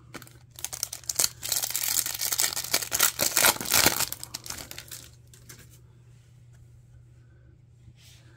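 Foil wrapper of a Garbage Pail Kids Chrome trading-card pack being torn open and crinkled by hand, a dense crackling that lasts about five seconds and then stops.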